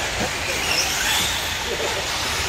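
Radio-controlled 1/10-scale short course trucks running on a dirt track: a steady mix of motor whine and tyre noise echoing in a large hall, with faint voices underneath.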